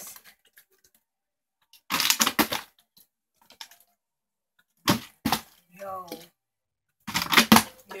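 Plastic water bottle clattering as it is flipped and lands, in a short noisy burst about two seconds in and a louder one near the end, with two sharp knocks in between.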